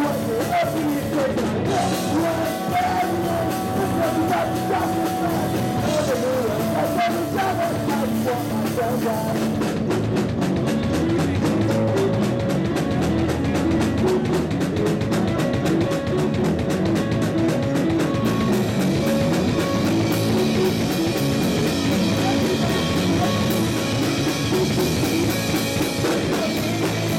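Live rock band: a sung vocal over electric bass guitar and drum kit, then about ten seconds in the band moves into a denser, busier instrumental stretch with regular drum hits.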